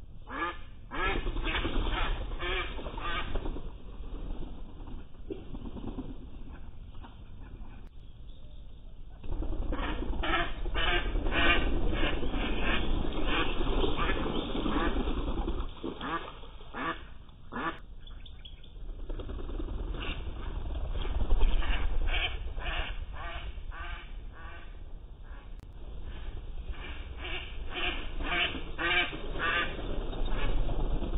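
Young mallard ducks quacking in several runs of rapid, repeated quacks.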